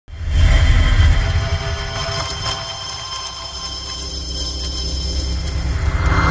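Logo intro music: a deep bass drone with steady held tones over it, starting suddenly, with a scatter of mechanical clicks and ticks through the middle and a swell near the end.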